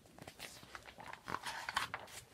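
Soft rustling and crinkling of the paper pages of a paperback picture book as a page is turned and the book is handled, in a run of small irregular scrapes.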